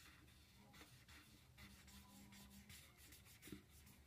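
Faint scratchy strokes of a felt-tip marker rubbed back and forth on paper, colouring in a shape, with one slightly louder tick about three and a half seconds in.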